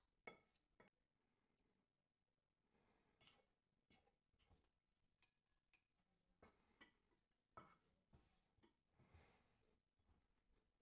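Near silence, with a few faint clinks of a metal fork against a glass mixing bowl as it stirs crumbly pie dough.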